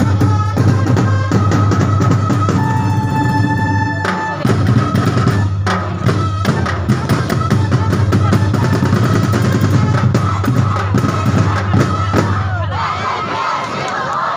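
Live street-dance percussion band playing a fast, dense rhythm on drums and cymbals over a steady deep drum roll, with a held higher tone for about a second and a half a few seconds in. Near the end the deep drumming stops and crowd voices come up.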